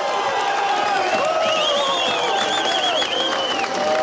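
A crowd cheering and applauding, with many voices shouting at once and swelling through the middle.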